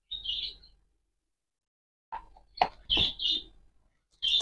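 A small bird chirping: three short high chirps, one near the start and two in quick succession about three seconds in, with a couple of sharp clicks just before the pair.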